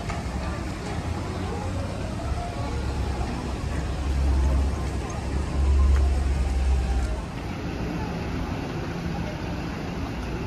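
Busy street ambience by a bus and taxi stop: a low rumble of road traffic that swells twice, about four and six seconds in, with background chatter of passers-by.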